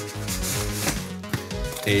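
Cardboard rustling and scraping as a cardboard mailer is pulled out of a shipping box, over soft background music with steady held notes.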